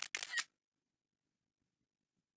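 Camera-shutter sound effect of an iPad taking a screenshot: one short, sharp double click lasting about half a second.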